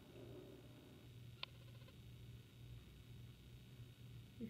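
Near silence: room tone with a faint steady low hum, broken once by a single faint click about a second and a half in.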